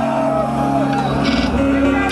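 Live band holding a sustained chord between songs, the chord changing about halfway through, under shouts and cheers from the crowd.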